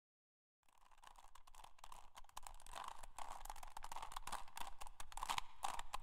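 Plastic Rubik's cube being twisted over and over: a dense run of rapid clicks and scrapes that fades in from silence about half a second in and grows louder.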